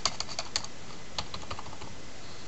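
Computer keyboard keystrokes: a quick run of clicks as the Enter key is pressed repeatedly to add blank lines, then a couple of single taps about a second in.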